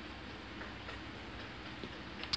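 Faint steady room noise with a few soft, irregular clicks.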